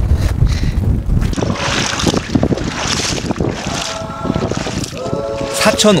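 Wind buffeting the microphone, with brine sloshing and splashing as feet wade through shallow salt-pan water.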